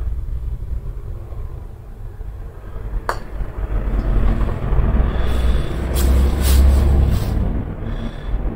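A putter head strikes a golf ball once with a sharp click about three seconds in, over a continuous low rumble that grows louder in the second half.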